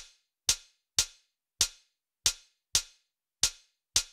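Closed hi-hat sample from Logic Pro's Drum Machine Designer (Boom Bap kit) sounding eight times, once for each eighth-note step clicked into the step sequencer. Each hit is a short, bright tick that dies away quickly, about two a second and unevenly spaced.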